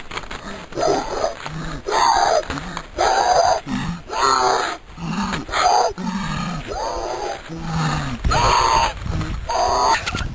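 A young man's wordless vocal noises: drawn-out grunts and groans in repeated bursts about a second apart, with a low wind rumble on the microphone.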